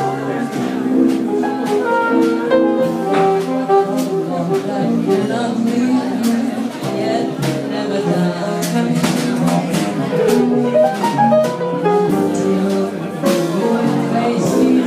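Small live jazz combo playing an instrumental passage of a ballad: upright bass and drum kit with cymbal strokes under a moving melodic lead line.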